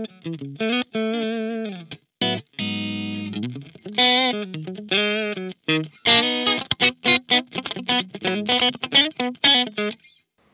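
Ibanez SA360NQM electric guitar played clean on its middle single-coil pickup alone, with no effects: a snappy tone. Picked notes and chords, with a held strummed chord about three seconds in and quicker picked notes in the second half.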